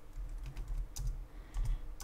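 Typing on a computer keyboard: a few scattered keystrokes with soft low thumps.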